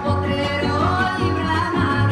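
Son huasteco from a trío huasteco: violin, huapanguera and jarana huasteca playing a strummed rhythm, with a woman's voice singing a high line that slides upward, in the falsetto style of the huapango.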